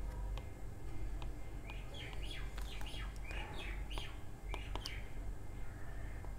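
Birds chirping in the background: a quick run of short, falling chirps from about two seconds in until about five seconds in, over faint scattered clicks.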